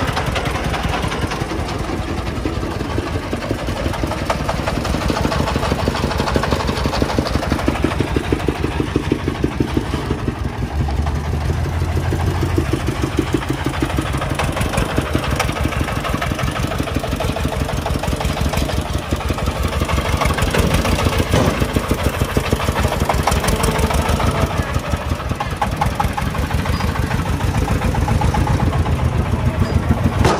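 Công nông farm truck's single-cylinder diesel engine running under load, a steady, fast, even chugging beat that swells and eases a little as the truck works.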